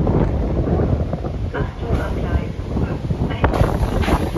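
Wind buffeting a phone microphone, a loud low rumble, with knocks from the phone being handled.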